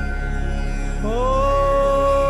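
Outro music in a chant style: a steady drone with held notes, and about a second in a new sustained note slides up and settles, holding on.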